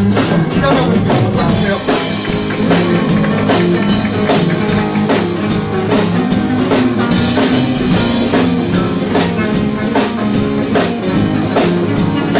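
A live band playing a blues jam: electric guitar, bass guitar and a Kurzweil keyboard over a drum kit keeping a steady beat.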